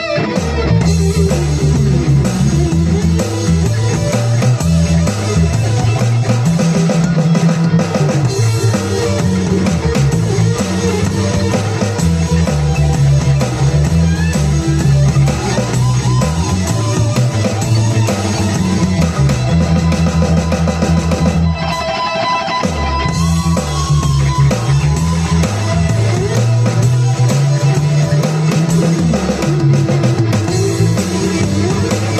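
Live rock band playing an instrumental passage, heard from right beside the drum kit: drums and electric bass driving a repeating groove. The bass and drums drop out briefly about two-thirds of the way through, then come back in.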